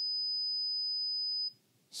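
A 5,000 Hz sine-wave test tone, one steady high pitch that cuts off suddenly about one and a half seconds in.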